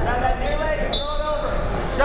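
Indistinct shouting voices of coaches and spectators in a gym, with a brief high steady tone about a second in.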